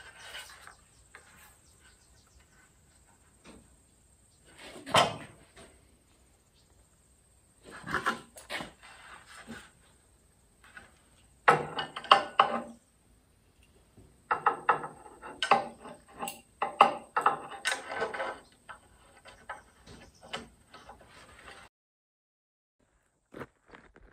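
A drill press boring holes through aluminum roof-rack tubing, heard as separate bursts of grinding and clatter with quiet gaps between. The sound cuts off suddenly near the end.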